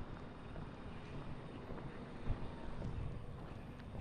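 Faint outdoor background: a low rumble with no clear source, and a soft knock a little over two seconds in.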